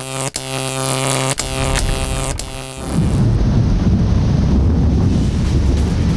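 Electronic film soundtrack: a sustained synthesizer tone with a sharp click about once a second. About three seconds in, it gives way to a loud, dense rumbling noise.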